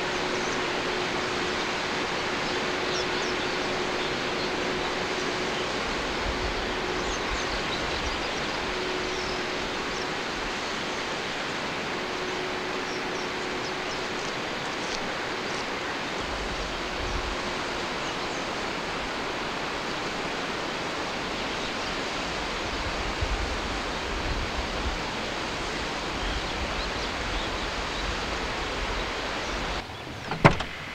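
Steady outdoor ambience: an even rushing noise with scattered faint high chirps. A low rumble comes and goes through the middle and second half.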